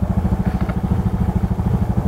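Small motorcycle engine idling with a steady, rapid low putter.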